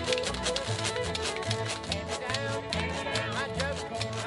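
Acoustic bluegrass band playing live: fiddle bowing the melody over a plucked upright bass line and quick strummed rhythm.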